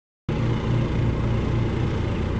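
A steady low outdoor rumble that starts a fraction of a second in and holds level.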